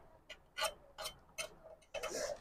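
Light, irregular clicks and scrapes, about five or six in two seconds, of a thin metal tool picking at the metal oil pan of a Jack F4 industrial sewing machine while the old oil and lint are cleaned out.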